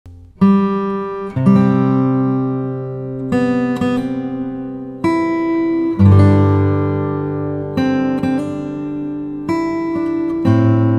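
Acoustic guitar music: slow chords, each struck and left to ring out, a new one every second or two.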